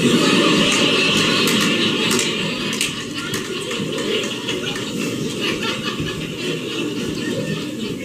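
Theatre audience laughing and clapping, breaking out suddenly and slowly dying down.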